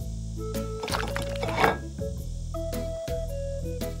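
Light cartoon background music with held notes. A short, noisy, wet sound effect about a second and a half in is a penguin gobbling its fish fast, and it is the loudest moment.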